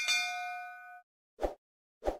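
A bright ding sound effect: a bell-like chime of several tones that rings for about a second and then stops abruptly. A short soft pop follows about a second and a half in.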